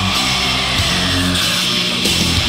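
Heavy metal music: distorted electric guitar playing a riff with the band, an instrumental passage without vocals.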